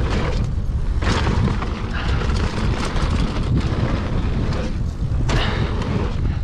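Wind buffeting a handlebar-level action camera's microphone while a mountain bike rolls down a dirt trail. It is a constant loud low rumble, with irregular bursts of hiss and crunch from the tyres over dirt and dry leaves.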